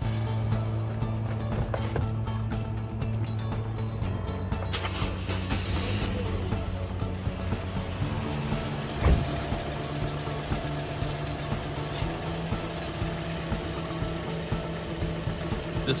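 Toyota Corolla petrol engine starting and then idling steadily. A single sharp knock comes about nine seconds in.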